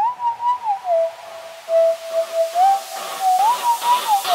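A whistled tune: a single clear note gliding up and down between a few pitches, the opening of a background music track.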